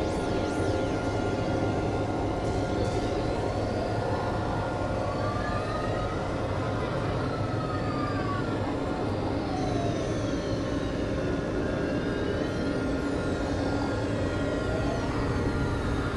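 Experimental electronic drone music: a dense, steady noisy synthesizer drone with many held tones, over which thin tones sweep up and down in pitch in slow arcs.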